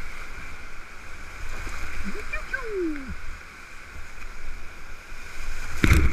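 Whitewater rapids rushing loudly around a kayak, with spray hitting the camera. About halfway through a voice gives one short cry that falls in pitch, and near the end there is a loud splash.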